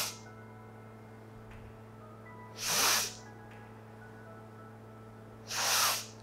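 A woman's forceful nasal inhalations for Wim Hof–style breathing, short sharp breaths in about every three seconds with relaxed exhalations between, over soft background music.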